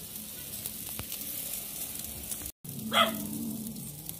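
Jerk chicken and pork sizzling on a jerk-pan grill grate over the fire, a steady hiss with faint crackles. About three seconds in, one short, loud bark-like call cuts in over the sizzling.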